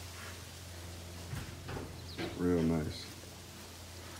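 A 1968 Ford Falcon's 351 Windsor V8 idling with a steady low rumble. A person's voice is heard briefly about two and a half seconds in.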